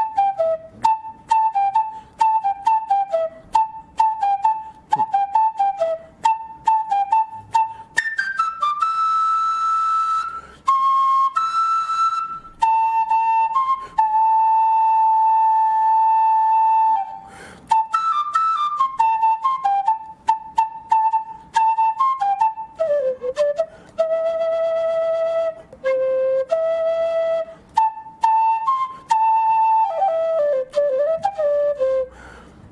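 Solo end-blown wooden flute playing a pentatonic tune, unaccompanied. It opens with quick, sharply tongued repeated notes, holds a few long notes in the middle, and returns to quick runs that dip lower near the end.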